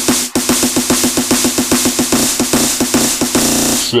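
Hardstyle electronic dance track: distorted kick drums in a build-up roll, speeding up from about five to about eight a second and finally blurring into one continuous buzz just before the end.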